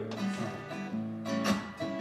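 Acoustic guitar picked and strummed between sung lines of a slow blues, with a sharper strum about one and a half seconds in; the singing voice comes back in right at the end.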